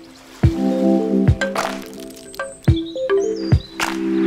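Music track: held chords over low thuds on a slow, uneven beat, with scattered crackling clicks and a short high chirp-like glide near the end.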